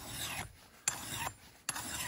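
Mill bastard file rasping across the steel edge of an axe-head scraper in three strokes a little under a second apart, each starting sharply: the blade's edge being sharpened.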